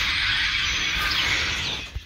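A huge spring flock of birds in bare treetops calling all at once: a dense, noisy chatter of overlapping high chirps and whistles, breaking off just before the end.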